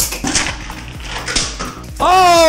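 Beyblade spinning tops rattling down a plastic Hot Wheels track and clattering into a plastic Beyblade stadium, with several sharp plastic clicks, over background music.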